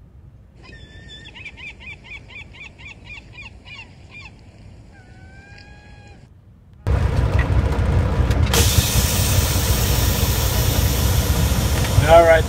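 Birds calling faintly: a quick run of short, falling notes, about three a second, then a few longer held calls. About seven seconds in, a loud, steady, low rumble of an idling engine cuts in suddenly and runs on.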